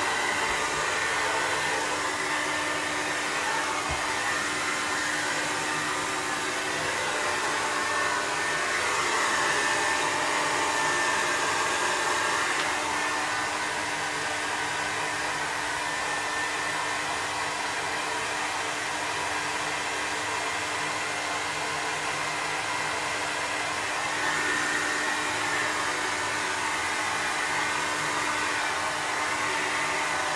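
Hand-held hair dryer running steadily, a constant rush of air with a steady hum beneath it.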